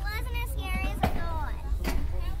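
Young girls' high voices talking and exclaiming over a steady low rumble, with two short knocks, one about halfway through and one near the end.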